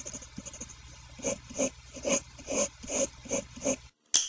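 A run of short breathy vocal sounds, about two a second, eight in all, starting about a second in and cutting off suddenly near the end.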